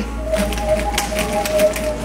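Corrugated plastic sound tubes whirled in circles, giving a steady hooting tone with a fainter, higher tone above it. A light, fast patter of clicks runs underneath.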